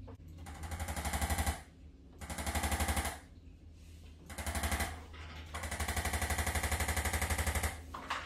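Corded electric chiropractic adjusting instrument firing rapid strings of taps against the patient's back. It runs in four bursts, the last and longest about two seconds.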